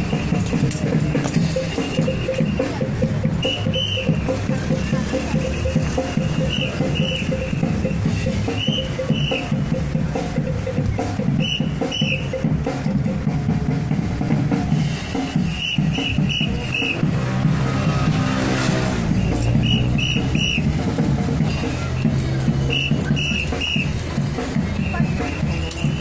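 Band music with drums running throughout. Short high chirps come in at intervals, singly or in quick runs of two to four.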